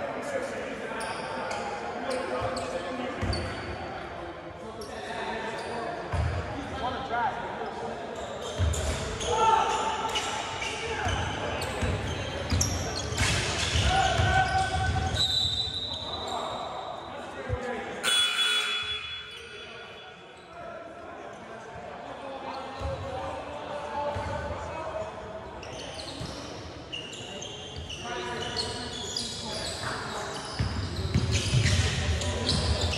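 A basketball bouncing repeatedly on a hardwood gym floor during play, with players' voices ringing through the large hall.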